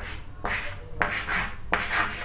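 Chalk writing letters on a chalkboard: a few short scraping strokes, one after another.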